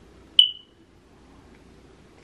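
A single short, high-pitched beep about half a second in, fading away within half a second.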